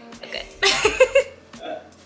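A woman's short, throaty vocal outburst, starting about half a second in and lasting about half a second, followed by a fainter sound near the end.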